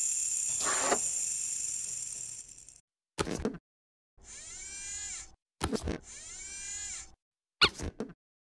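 Animated sound effects of a mechanical claw arm: a long metallic hissing slide that fades away, then clanks and two whirring motor runs that rise and fall in pitch.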